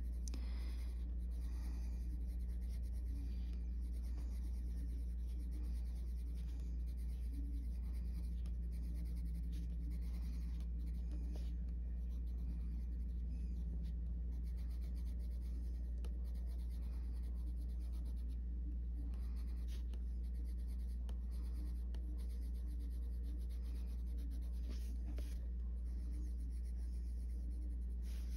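Faber-Castell Polychromos coloured pencil scratching on colouring-book paper in a run of quick, short feathering strokes, with a steady low hum underneath.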